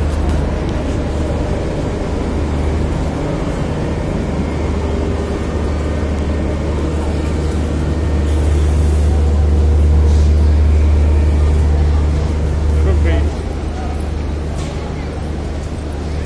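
Railway platform ambience beside a standing air-conditioned passenger train: a steady low hum that drops a little about thirteen seconds in, with faint voices in the background.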